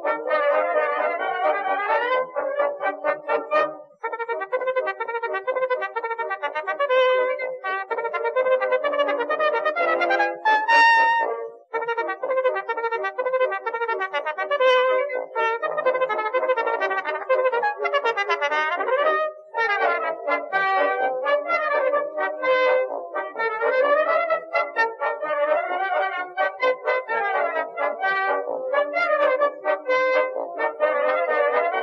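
Instrumental music with a brass melody, sounding thin and without bass, as on an old recording. It breaks off briefly a few times, about 4, 11 and 19 seconds in.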